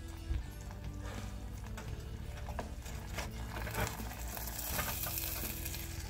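Rice and beef tehari sizzling in ghee in a steel pot, stirred with a wooden spatula that scrapes and knocks through the grains.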